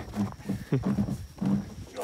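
A man laughing in a few short, low chuckles.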